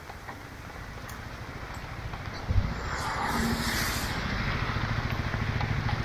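Royal Enfield Himalayan's single-cylinder engine idling with a steady low pulse, getting louder about two and a half seconds in.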